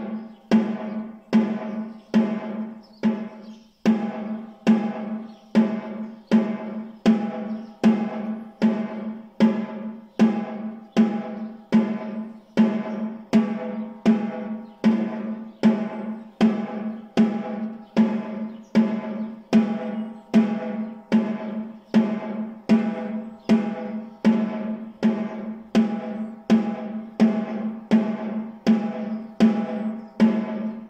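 A snare drum struck with wooden sticks in a slow, steady beat of about two strokes a second, each hit leaving a ringing tone. It is a beginner's right-right-left-left stroke exercise.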